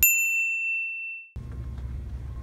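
Siri's activation chime: a single clear electronic ding that rings and fades for just over a second, then cuts off suddenly.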